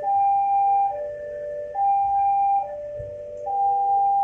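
Electronic railway level-crossing warning chime sounding a repeating two-step pattern, a high tone followed by a lower double tone, about once every 1.7 seconds, over a faint low rumble.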